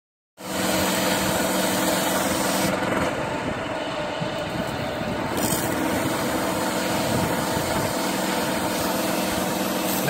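Fremont pressure washer running, its wand blasting a steady jet of water onto concrete: an even hiss of spray over the machine's steady hum. The high part of the hiss dulls for a couple of seconds about three seconds in.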